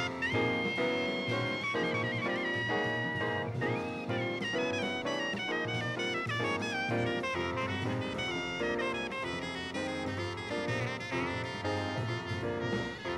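Soprano saxophone soloing in live modal jazz over piano, double bass and drums: a long held high note near the start, a second held note, then quick falling runs of notes from about four seconds in.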